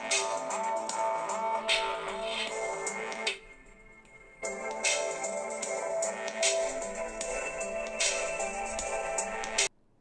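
A music sample with a steady beat played through the Ulefone Armor 6's single rear loudspeaker. About a third of the way in it drops away for about a second, then resumes, and it cuts off suddenly just before the end.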